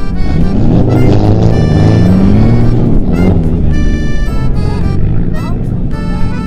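Background music with steady held notes, and over it a car engine revving up and down through the first half.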